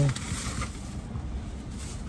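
Faint rustling of a plastic bag and a plastic water bottle being handled, over a low steady rumble.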